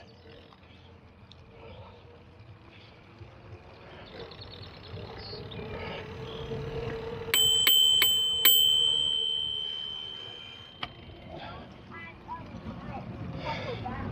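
Bicycle bell rung four times in quick succession about halfway through, the high ring carrying on for a couple of seconds after the last strike before dying away.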